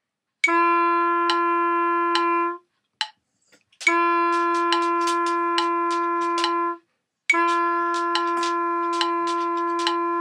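A wind instrument plays three long notes on the same pitch, with short breaks between them, in time with a metronome clicking at 70 beats per minute.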